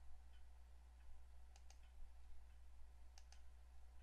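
Faint computer mouse button clicks, each a quick press-and-release pair: one about a second and a half in, another about three seconds in. They sit over a low steady hum.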